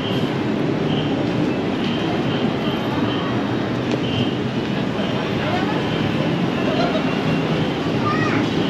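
Busy city street ambience: road traffic running steadily, with passers-by talking and a short high beep repeating every second or so.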